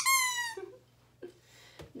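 Rubber squeaky toy dog being squeezed: the tail of a squeak, a whistling tone falling in pitch for about half a second.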